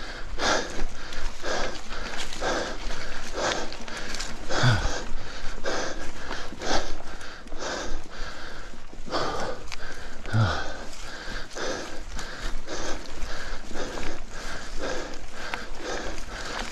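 A cyclist breathing hard and rhythmically while pedalling uphill, about two heavy breaths a second, close to the microphone.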